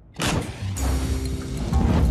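A sudden whoosh about a quarter of a second in, then background music with a deep bass line begins.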